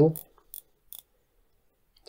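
The 120-click ceramic bezel of an Aerotec Coral Bay dive watch being turned by hand, giving a few separate clicks in the first second.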